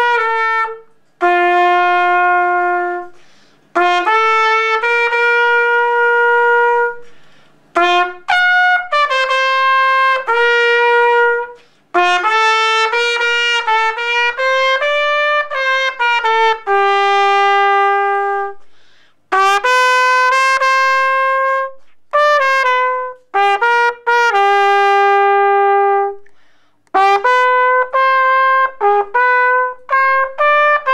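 Unaccompanied trumpet playing a slow melody in phrases of long held notes, with a short pause for breath after each phrase.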